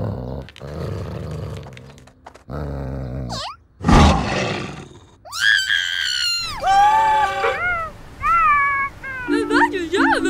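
Cartoon creature vocals: low growling from a hidden monster, building to one loud roar about four seconds in. A small cartoon cat then lets out high-pitched, frightened yowls and wails that slide down in pitch, breaking into shorter cries near the end.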